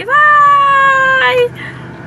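A woman's voice holding a long, high-pitched, sing-song "bye-bye" for over a second, ending with a short syllable. After that only a low, steady hum inside the car remains.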